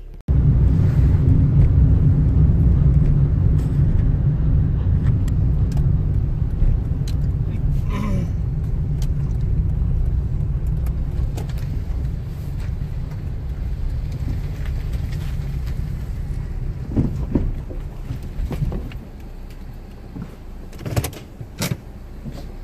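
Car engine running at idle, heard from inside the cabin as a steady low rumble that slowly eases off. A few light knocks and clicks near the end.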